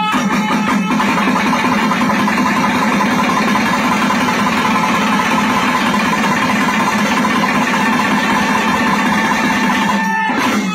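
Nadaswaram ensemble playing a loud, continuous melody over a steady low note, with thavil drums beating along.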